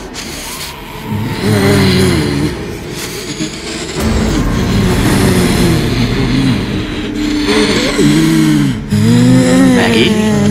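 Deep, distorted horror sound effect: a low pitched groan that swells up and falls back in pitch again and again, about once a second.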